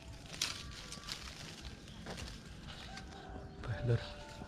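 Clove tree leaves rustling and small crackles as clove bud clusters are picked by hand off the twigs, a few sharp ones scattered through.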